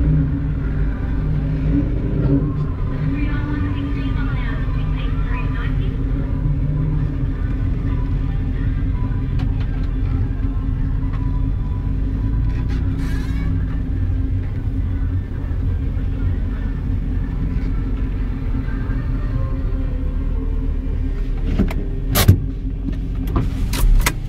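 Holden VZ SS Ute's 5.7-litre V8 running at idle, heard from inside the cab as a steady low rumble. A few sharp clicks near the end.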